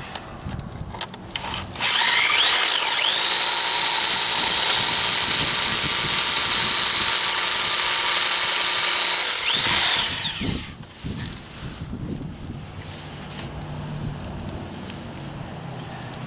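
Electric hammer drill running for about eight seconds, a carbide-tipped Heller bit boring into very hard quartz rock with a steady high whine; the motor spins up about two seconds in and winds down near ten seconds. The bit is making poor headway, its carbide tips chipped.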